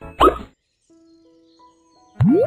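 Playful children's background music with a quick rising glide about a quarter second in, then only faint held notes.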